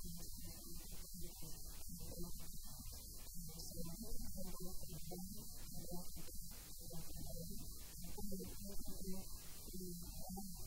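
Steady electrical hum with a muffled, garbled woman's voice underneath, too degraded to make out words.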